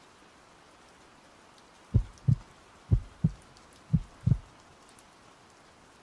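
Heartbeat sound effect: three low lub-dub double thumps about a second apart, starting about two seconds in, over a faint steady rain ambience.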